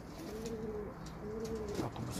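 Domestic pigeons cooing: a run of low, arched coo notes, about three in quick succession.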